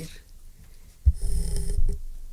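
A sudden loud low rumble on a close studio microphone about a second in, lasting just under a second, with a faint hiss over it.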